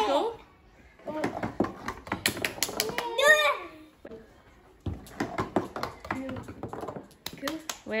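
A marble clicking and rattling down a run of cardboard tubes taped to a cardboard board, in two spells of quick light clicks with a pause between them.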